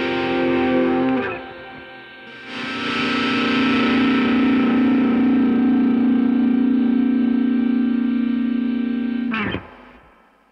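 1971 Gibson Les Paul Recording electric guitar played through a 1974 Fender Deluxe Reverb amp: sustained notes, a brief drop about a second in, then a long held chord from about two and a half seconds in. The chord stops abruptly near the end and fades out.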